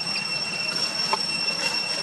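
A steady high-pitched whine on two unchanging notes, with a few light crackles of dry leaves as a macaque moves over leaf litter.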